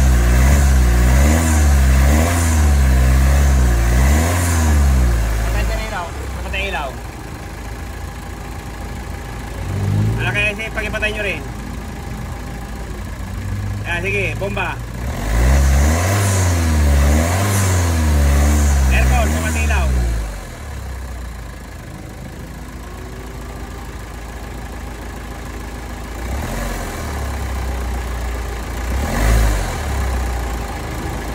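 Hyundai Santa Fe engine idling and being revved in repeated throttle blips, in two runs of about three rises and falls each, a quarter of a minute apart. The revving is done to check the alternator's charging output on a battery tester.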